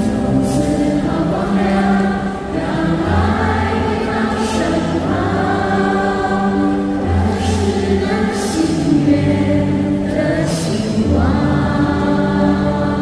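A group of women singing a slow Chinese-language song together over an amplified band accompaniment with sustained bass notes, heard live in a large hall.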